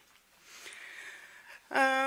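A woman breathing in audibly, a soft hiss lasting about a second, then near the end a short, steady-pitched hesitation sound ("ehh") in her voice before she speaks again.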